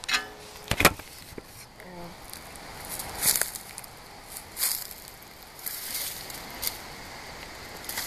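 Footsteps crunching and rustling through dry leaf litter, with irregular sharp knocks and bumps, the loudest a little under a second in and about three seconds in.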